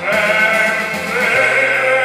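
Male baritone singing live, holding a long note with a strong vibrato and moving up to a higher note about two-thirds of the way through, over a sustained electronic keyboard accompaniment.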